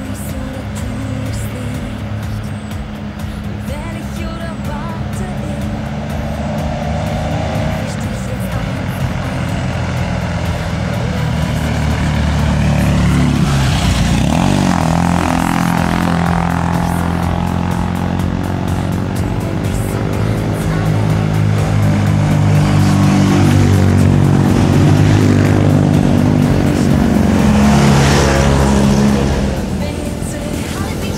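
Classic Fiat 500s driving past one after another, their small air-cooled two-cylinder engines running. One car passes close about halfway through, and the engine sound builds again in the last third, falling off just before the end.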